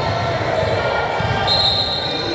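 A basketball dribbled on a hardwood gym floor, bouncing in the reverberant hall, with voices in the background. A high steady tone comes in about one and a half seconds in.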